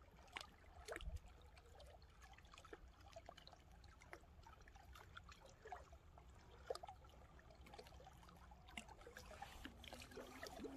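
Faint small lake waves lapping and trickling among shoreline rocks, with scattered, irregular little splashes over a low steady rumble.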